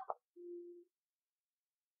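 A single short, steady electronic tone about half a second long, followed by silence.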